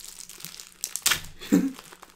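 Packaging crinkling and rustling as drinks are handled and unpacked, with one sharp tap about a second in.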